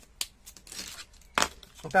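Plastic felt-tip markers and their cardboard box being handled: a sharp click, a short rustle, then a louder click about one and a half seconds in.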